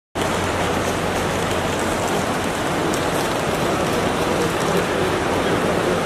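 Steady, even hiss-like background noise of a busy airport terminal, with a low hum underneath and no clear single event.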